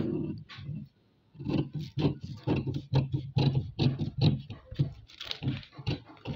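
Scissors cutting through crumpled paper pattern sheet in quick repeated snips, about four a second, starting about a second in.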